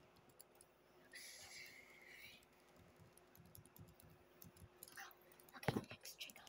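Very faint, scattered soft clicks and taps close to the microphone, with a brief soft hiss about a second in. A louder bump near the end as the phone is jostled.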